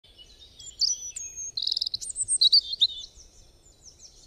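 Songbirds chirping and trilling: quick high whistled notes and short glides, with a rapid trill in the middle. The song fades out near the end.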